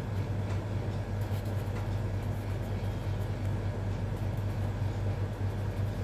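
A coloured pencil scratching faintly across paper as a word is written, over a steady low hum that is the loudest sound throughout.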